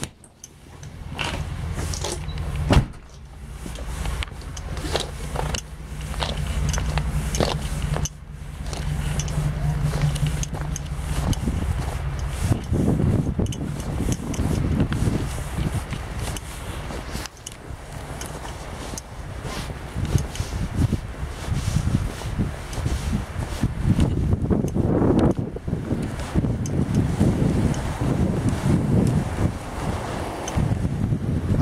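Door latch and handle clicking, with one sharp knock about three seconds in, over a steady low mechanical hum. From about twelve seconds in, uneven rumbling wind noise on the microphone takes over.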